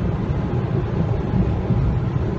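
Steady low rumble of a moving car heard from inside the cabin.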